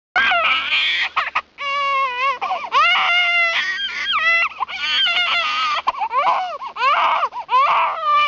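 A child crying and wailing: a run of high, wavering cries, one after another.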